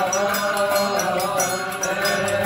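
Coptic liturgical hymn chanted by a group of men's voices, accompanied by a steady beat of hand cymbals and a triangle.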